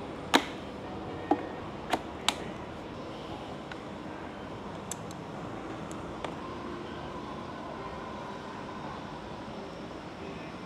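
Four sharp plastic-and-metal clicks and knocks in the first two and a half seconds, as batteries are pressed and seated onto a metal battery mounting plate in a foam-lined hard case. Two faint ticks follow later, then steady background noise.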